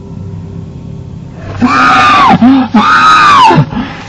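Two loud screams, each rising then falling in pitch, starting about one and a half seconds in and separated by a short break. Under them is a low steady hum.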